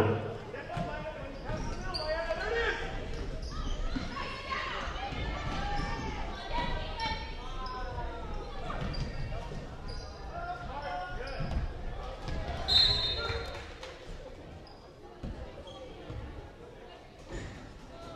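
Basketball dribbling on a hardwood gym floor with players' and spectators' voices echoing in the gym. About two-thirds of the way in, a referee's whistle blows briefly, stopping play.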